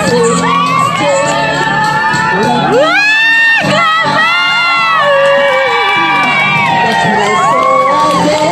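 A group of women cheering and screaming with excitement, many high voices overlapping and gliding up and down in pitch, with a burst of high-pitched shrieks about three seconds in. Music plays underneath.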